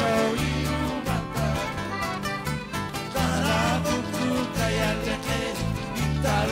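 A live huayño band is playing, with an electric bass line pulsing in even blocks under guitars and a wavering melody.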